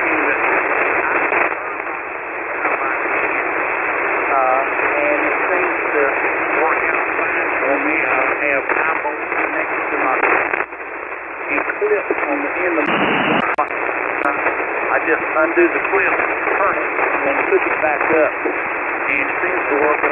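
Weak single-sideband voice from a distant amateur station on the 40-metre band, heard through a shortwave receiver and largely buried in steady band noise, so that only scattered words come through. The audio is narrow and tinny, cut off above and below the voice range, with a brief drop in the noise about ten seconds in and a short louder burst a few seconds later.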